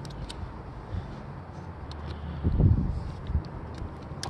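Low outdoor background rumble, with a brief low thump about two and a half seconds in and a few faint light clicks.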